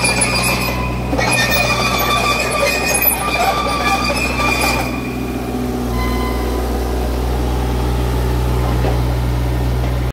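Bobcat E27z mini excavator's diesel engine running, with high squealing and clattering from the steel tracks for about the first five seconds. After that the engine runs on steadily alone.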